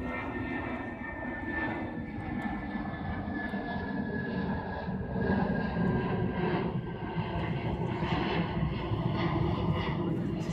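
Steady rushing engine roar with a faint high whine that slowly falls in pitch, like a distant aircraft passing over. It grows a little louder about halfway through.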